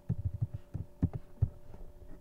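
Computer keyboard keystrokes typing a short word: about seven quick, low thumps in the first second and a half, over a faint steady hum.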